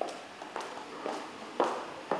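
Footsteps on a hard floor, about two steps a second, the last one the loudest.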